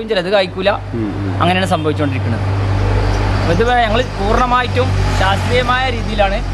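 A car engine runs with a low, steady rumble that grows louder about halfway through as the car comes up close, under men talking.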